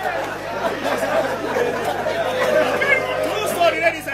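Several people talking over one another in a steady murmur of chatter, with no single clear voice.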